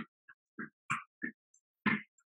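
Plank jacks: a quick, even run of short bursts, about three a second, as the feet land out and in and the breath is pushed out with each jump. Each burst is clipped short, with dead silence between.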